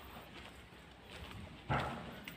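Footsteps walking on a grassy path, with one short, loud thump near the end.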